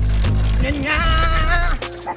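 Background music: a heavy bass line under a wavering melodic line, the bass cutting out shortly before the end.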